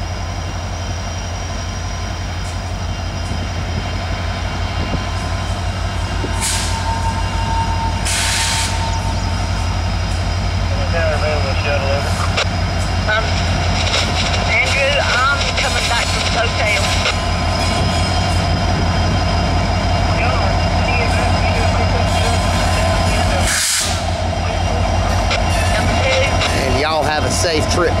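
Two EMD diesel-electric locomotives, an SD70M-2 and an SD60M, moving slowly past with a deep, steady, pulsing engine rumble that grows louder as they come alongside.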